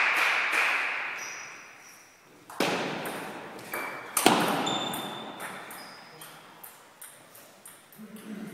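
Table tennis ball strikes off bats and table, each sharp click ringing on in the large hall, the two loudest about two and a half and four seconds in. These are followed by a run of lighter ball taps, about two a second.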